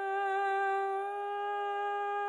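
A singer's voice holding one long, steady note, the closing note of a Marathi devotional bhajan.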